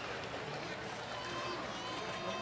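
Indistinct voices, with no clear words, over a steady background haze.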